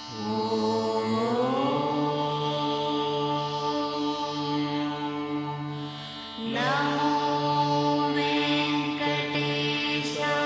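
South Indian devotional chant-style music: long held melodic notes over a steady drone. A new phrase slides upward into place at the start and again about six and a half seconds in.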